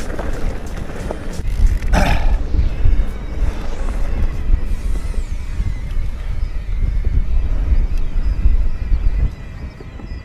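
Wind rumbling and buffeting on the microphone of a handlebar camera as an e-mountain bike rides a rough dirt track, with rattles from the bike over the ground and a sharp clatter about two seconds in. The rumble drops away suddenly near the end.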